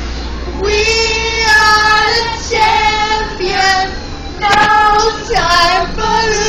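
High women's voices singing loudly, holding long notes in several phrases, over the low steady rumble of a moving bus.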